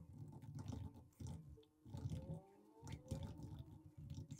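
Faint typing on a laptop keyboard: quick runs of key clicks in several short bursts with brief pauses between them.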